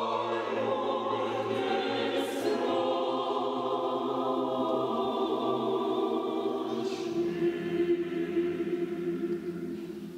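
Unaccompanied mixed Orthodox church choir singing sustained chords over a low bass line. The bass drops out partway through, and the chord dies away at the end.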